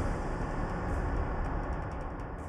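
A low rumbling drone from the background score, left over after a dramatic music sting and dying away slowly.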